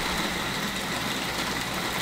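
Bosch food processor motor running steadily with a faint high whine, its blade processing dates, dried mulberries and almond flour into a thick dough.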